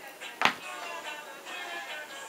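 Background music, with one sharp knock about half a second in as a hand-held wavy-bladed soap cutter goes through a soft, freshly made soap loaf and strikes the plastic cutting board.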